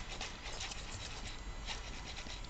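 Axial XR10 rock crawler working up a rock face: irregular scraping and clicking of its tyres and drivetrain against the rock.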